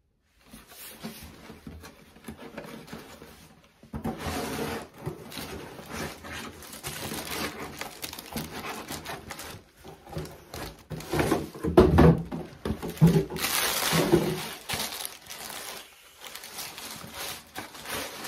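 A cardboard shoebox being handled and opened, with tissue paper rustling and crinkling as a shoe is lifted out; irregular handling noise, with a few heavier knocks of the box around the middle.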